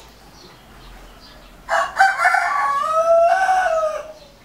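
A rooster crowing once, starting a little before the middle: a short opening note or two, then a long held note that falls away at the end.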